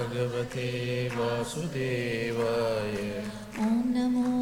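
A voice chanting a devotional Hindu mantra in long held notes over a steady low tone, the pitch stepping from note to note.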